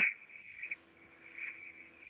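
Faint steady high-pitched whine with a fainter low hum beneath it, the background noise of a video-call audio line between speakers.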